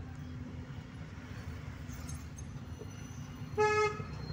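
One short car horn honk near the end, a single steady pitched blare, over the steady low rumble of a car driving in traffic, heard from inside the car.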